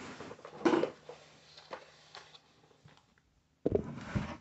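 Faint clicks and knocks of plastic office-chair parts being handled on a wooden floor, with a short 'oh' about half a second in and a louder thump just before the end.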